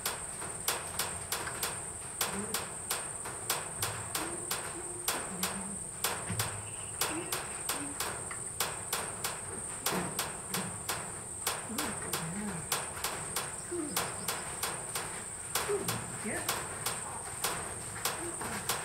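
Insects calling: a steady high-pitched buzz with sharp, regular ticks about three times a second.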